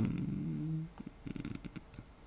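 A man's drawn-out hesitation hum, a low "эээ" while he searches for a word. It trails off about a second in into a creaky, rattling vocal fry.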